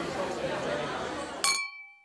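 Murmur of indistinct voices, then a single clink of drinking glasses about one and a half seconds in that rings on briefly as the background noise cuts off.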